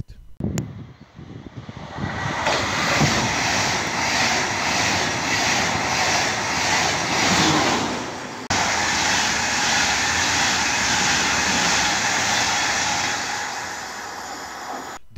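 ICE high-speed trains passing through a station at speed: a loud, steady rush of wheel and air noise that builds over the first two seconds. An abrupt cut about eight and a half seconds in joins a second train's pass, which fades slightly near the end.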